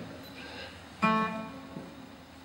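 Acoustic guitar plucked once about a second in, a single note ringing and fading away.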